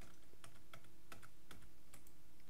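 Computer keyboard keys being pressed: about six light, separate clicks at an irregular pace.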